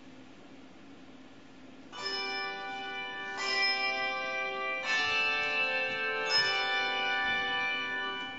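Handbell choir ringing four chords, the first about two seconds in and the rest about a second and a half apart, each chord of many bells of different sizes sounding together and ringing on into the next.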